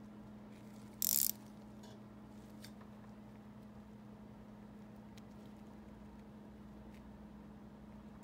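A socket ratchet wrench gives a short burst of clicking about a second in while it turns a bolt on a motorcycle brake caliper, followed by a few faint handling clicks over a steady low hum.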